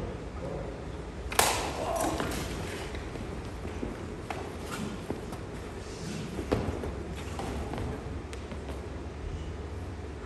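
Room noise: a steady low hum and indistinct voices. A sharp impact comes about a second and a half in, and a smaller one about six and a half seconds in.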